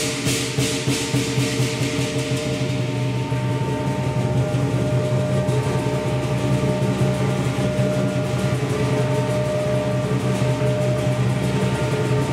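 Southern lion dance percussion of drum, cymbals and gong playing a fast, steady beat. The gong and cymbals ring on continuously between the strokes.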